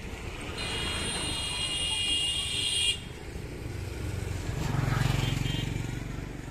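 Street traffic: a vehicle horn sounds steadily for about two seconds and cuts off sharply, then a motor vehicle's engine rises to its loudest about five seconds in and eases off as it goes by.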